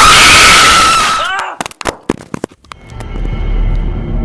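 Jump-scare screamer sound effect: a very loud, harsh scream held on one high pitch, fading out about a second in. A few sharp clicks follow, then eerie music with a low drone begins near the end.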